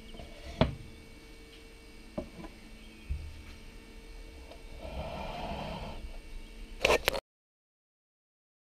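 Small items being set by hand into a wooden six-bottle carrier: a few light clicks and knocks, a dull thump, a rustling stretch, then a quick cluster of louder knocks before the sound cuts off suddenly.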